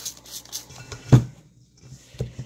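Spray bottle spritzing alcohol onto dry bath bomb mix in a stainless steel bowl: a few quick spritzes, then a louder thump about a second in.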